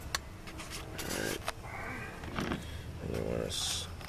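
A few light clicks and taps of a plastic spoon against a coffee can and paper filter as ground coffee is spooned in, with short murmured voice sounds between them.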